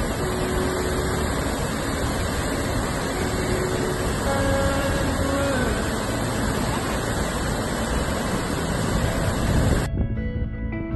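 Waterfall pouring onto rocks: a steady, dense rush of water that cuts off suddenly near the end.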